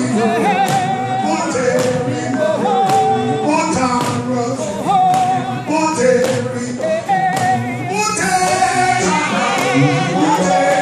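Gospel singing by a group of voices, with a steady percussive beat under it.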